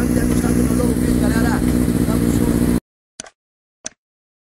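Yamaha XJ6's inline-four engine idling steadily through a straight-through sport exhaust, with a man talking over it. The engine sound cuts off suddenly near the end and is followed by two short clicks.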